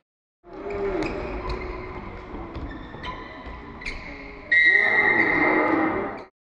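Live game sound in a basketball hall, with the crowd and a few short knocks. About four and a half seconds in, a loud steady high tone sounds over the crowd for more than a second.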